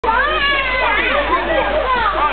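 Several children's voices shouting and calling over one another while playing, too overlapped to make out words.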